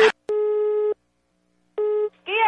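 A click, then telephone busy-signal beeps on the phone line: a steady mid-pitched tone lasting about half a second, a pause, and the tone again near the end.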